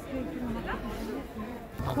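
People's voices chattering in the background, with one voice starting to call out a price right at the end.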